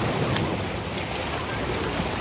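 Sea waves surging and washing over black shoreline rocks in a steady hiss, with wind rumbling on the microphone.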